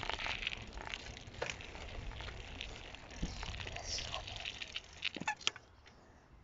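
Knobby mountain-bike tyre rolling over rough, gravelly tarmac: a steady crunching rumble with scattered clicks and rattles from the bike, and a few short squeaks near the end.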